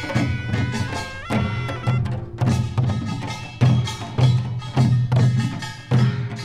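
Korean pungmul folk band playing: a taepyeongso (double-reed shawm) holding pitched notes with an upward slide about a second in, over a steady beat of small hand gong (kkwaenggwari), large gong (jing) and drum strokes.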